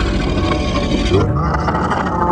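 Dark, droning horror-intro soundtrack with a loud hiss over it that cuts off suddenly a little over a second in, followed by a wavering, voice-like effect.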